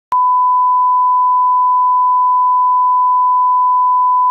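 A 1 kHz reference test tone played with SMPTE colour bars: one steady, loud, unwavering beep at a single pitch that switches on with a click just after the start.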